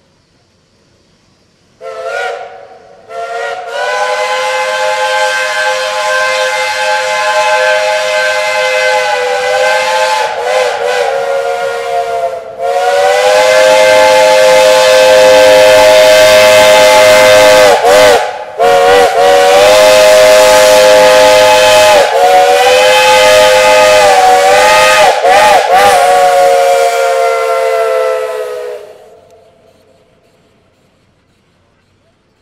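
Steam whistles of Shay geared steam locomotives, several tones sounding together. After a short toot about two seconds in, they blow a string of long blasts that run almost together until near the end, with brief breaks and the pitch sagging and wavering where the blasts start and stop.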